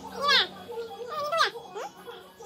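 A baby's high-pitched wordless vocal sounds: three rising-and-falling calls, the loudest about a third of a second in.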